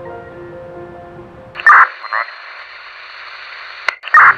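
A held music chord fading out, then, about a second and a half in, a sharp burst of two-way radio squelch and static with a short chirp, a brief crackle and a steady hiss that cuts off with a click near the end.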